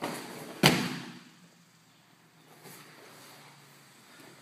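Two judoka falling onto a judo mat in a yoko wakare sacrifice throw: a brief rustle of gi cloth, then one loud slam of bodies hitting the mat under a second in.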